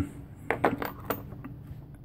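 A few light clicks and taps in quick succession, about half a second to a second in, then a faint low background.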